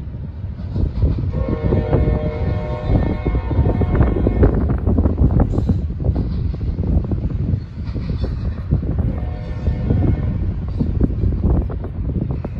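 Double-stack intermodal freight cars rolling past, a steady rumble with a rapid run of wheel clicks over the rail joints. A multi-tone train horn sounds from about a second in to about four and a half seconds in, and more faintly again past the middle.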